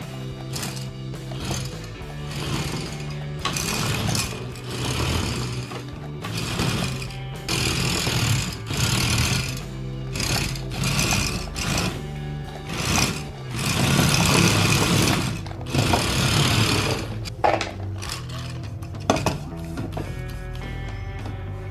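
Geared DC motors of a 3D-printed four-wheel RC car whirring in repeated bursts of a second or two as it is driven by remote. Its hard printed plastic wheels are skidding on the smooth floor. Background music runs underneath.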